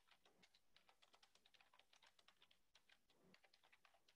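Very faint typing on a computer keyboard: quick, uneven key clicks, several a second.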